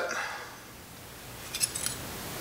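A few light metallic clinks about one and a half seconds in, as the thin steel cam support plate is lifted off a Harley-Davidson cam plate.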